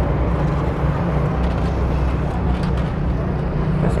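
A motor running steadily with a low, even hum, under outdoor market background noise.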